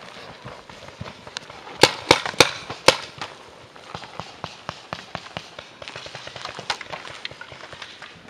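Paintball markers firing: a quick run of four sharp shots a little under two seconds in, then scattered fainter shots, with running footsteps on grass.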